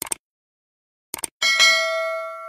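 Two quick double clicks, then a bell ding with several ringing tones that fades slowly: a like-and-subscribe cue for a subscribe click and a notification bell.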